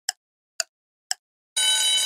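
Quiz countdown timer sound effect: three short ticks about half a second apart, then a loud, steady ringing alarm tone that starts about one and a half seconds in as the timer reaches zero.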